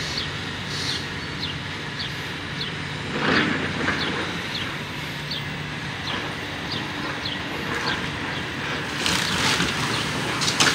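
Demolition excavator's engine running steadily, with a clatter of debris about three seconds in and a short high chirp repeating about every half second. A car drives past near the end.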